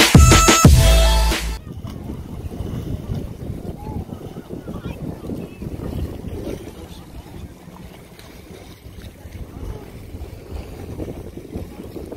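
Intro music ends abruptly about a second and a half in. Then wind buffets the phone's microphone over open-water ambience, with faint distant voices.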